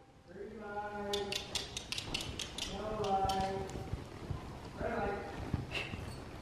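Horses walking on a sand arena floor, with soft low hoof thuds and a quick run of light clicks about a second in. A faint voice calls out from a distance three times, long drawn-out calls.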